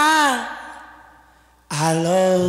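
A single short vocal 'ooh' from a soul record, its pitch rising then falling and trailing off in reverb. About 1.7 s in, the music comes in loudly on a held note.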